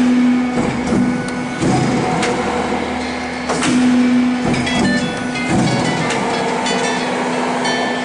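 Hydraulic guillotine sheet-metal shear running: a steady pitched hum from its hydraulic power unit that swells at times, with irregular sharp clanks and knocks from the blade and hold-downs as the machine cycles.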